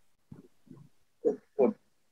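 A man's voice making a few brief, quiet sounds that are not words, ending in two short syllables that fall in pitch, about a second and a half in, heard over a video-call line.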